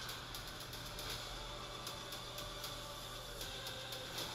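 Low, steady hiss with a faint electrical hum: room tone from the microphone, with no distinct sound event.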